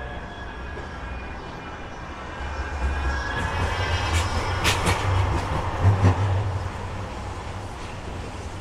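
Manchester Metrolink tram passing close by on street track. The low rumble of wheels and motors swells about two and a half seconds in, with a faint whine and two sharp clicks near the middle, then eases off near the end.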